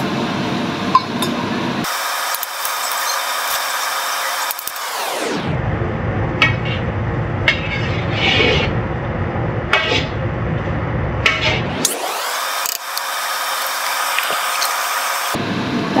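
Marinated chicken and vegetables frying in a wok over a gas flame, with a metal skimmer scraping and clicking against the pan as they are stirred. The sound turns thin about two seconds in, goes muffled from about five seconds to twelve, then turns thin again until near the end.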